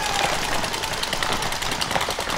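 Paintball markers firing in rapid, overlapping streams of shots, heard as a dense run of quick pops.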